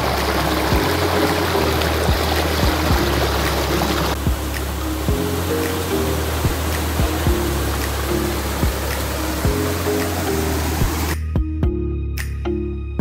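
Rushing water of a mountain stream cascading over rocks and small falls, heard under background music with a steady beat; the water sound stops shortly before the end, leaving only the music.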